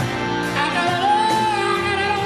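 Live soul band playing, the male lead singer holding a long sung note that starts about half a second in, over guitar and band in a large hall.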